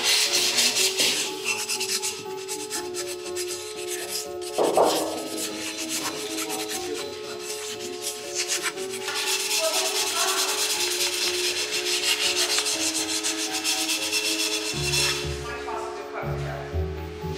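Abrasive paper rubbed quickly back and forth on the cut edge of an empty glass sake bottle, smoothing the glass after cutting. The scratchy strokes come thick and fast, strongest at the start and again through the second half.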